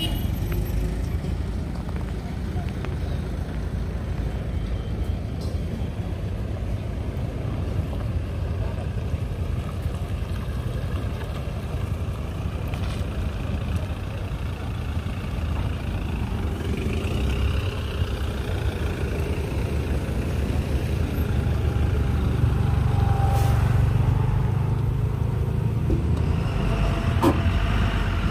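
Mahindra Bolero Maxx Pik-Up HD's diesel engine running as the pickup drives slowly: a steady low rumble that grows louder about twenty seconds in as the truck comes closer.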